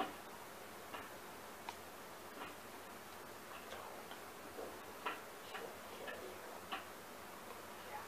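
Faint, irregular small clicks and ticks over a steady background hiss.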